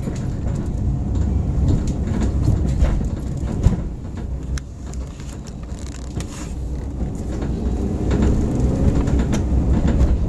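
Steady low rumble of a car rolling over a rough, potholed street, heard from on board, with scattered knocks and rattles. It eases off a little in the middle, then grows louder again.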